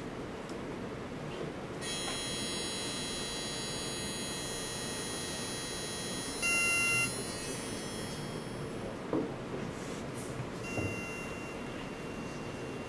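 Electronic test tones generated by a Pure Data patch over the speakers: a cluster of steady high tones starts about two seconds in, a louder short beep sounds just past the middle, and a single high tone holds near the end.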